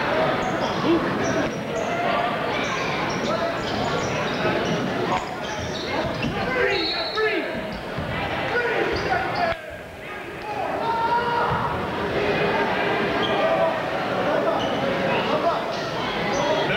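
Basketball bouncing and dribbling on a hardwood gym floor amid the steady chatter of a crowd, echoing in a large gym.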